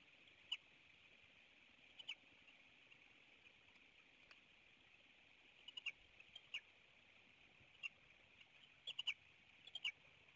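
Bald eagle chirps: short, high, squeaky calls, singly or in quick clusters of two or three, scattered through a faint steady hiss.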